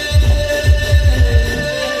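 Live Sambalpuri band music with no singing: runs of rapid low drum beats, about six or seven a second, over sustained held tones; the drumming stops shortly before the end.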